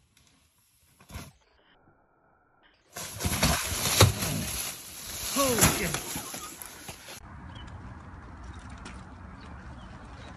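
A mountain bike crash in the woods: after about three seconds of near silence, a burst of thumps and rattles as rider and bike go down, with a short vocal cry in the middle of it.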